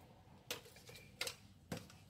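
Mostly quiet, with three faint short clicks: about half a second in, just past a second, and near the end.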